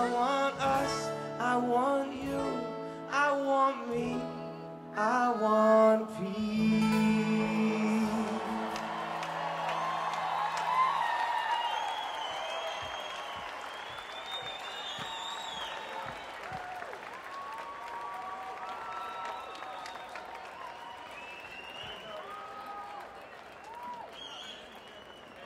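Rock band and choir singing the last lines of a song live, ending on a long held chord about ten seconds in. A large outdoor crowd then cheers and applauds with scattered whoops, slowly fading.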